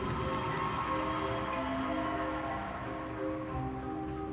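High school marching band playing a soft passage of sustained, held chords, the notes changing slowly. A few light percussion notes come in near the end.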